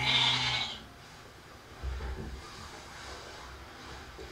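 A Shetland sheep bleats once, briefly, right at the start: a hungry flock that has not yet been fed. Then quieter shuffling and low thuds as the flock moves about on the straw.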